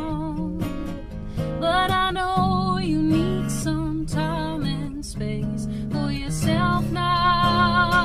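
A woman singing long, wavering notes over a strummed acoustic guitar.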